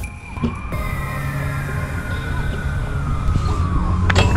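A siren winding slowly down in pitch over about four seconds, over a steady low background of music.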